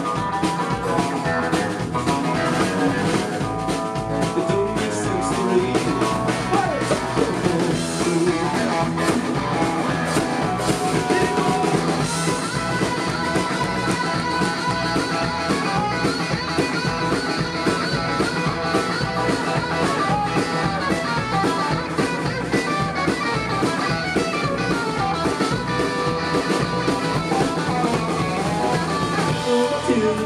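Live country-rock band playing an instrumental break with no singing: a Telecaster-style electric guitar plays the lead line over a drum kit and strummed acoustic guitar, loud and unbroken.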